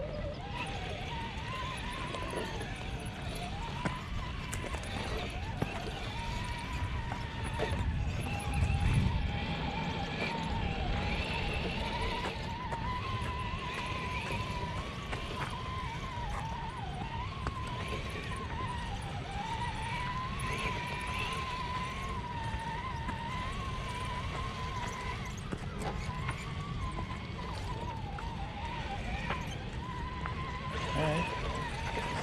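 Electric drivetrains of 1/10-scale RC rock crawlers whining, the pitch rising and dipping with the throttle as they crawl over dirt and rocks. Under it is a low rumble that grows louder about nine seconds in.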